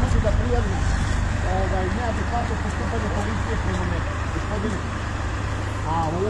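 Steady low rumble of road traffic and nearby vehicle engines, with faint voices talking in the background.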